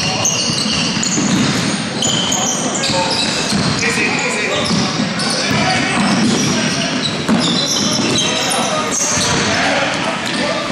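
Indoor basketball game on a hardwood court in an echoing hall: the ball bouncing, sneakers squeaking on the floor again and again, and a sharp knock about seven seconds in.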